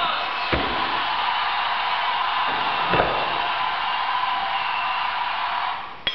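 Two hammer blows on a stonemason's chisel held against a block of stone, about two and a half seconds apart, over a steady hiss.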